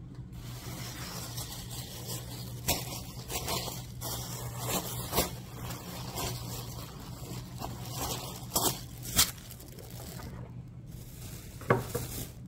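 Cloth rustling and brushing near the microphone as a soft onesie is handled and unfolded, with a few short sharp knocks and taps from the handling, over a steady low hum.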